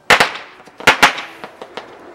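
Fireworks going off: a pair of sharp bangs at the start, another pair about a second in, then a few fainter cracks.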